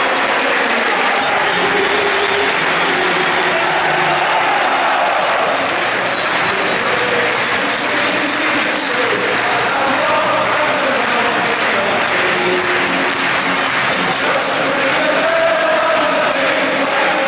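Large football crowd singing together in the stands, with clapping through the song.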